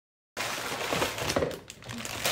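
Cardboard box flaps being handled and plastic bags of LEGO pieces crinkling and rattling as they are pulled out of the box, with several sharp clicks and knocks. The sound starts abruptly about a third of a second in.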